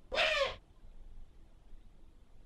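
A single short, raspy owl call, about half a second long near the start, its pitch rising then falling.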